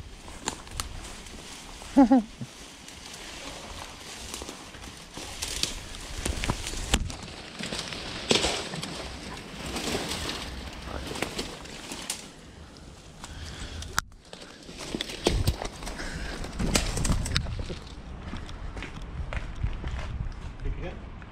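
Leafy shrubs and branches rustling, swishing and snapping as a person pushes through dense undergrowth, with crackling footsteps on dry twigs. The sound comes in irregular bursts of rustling and sharp cracks.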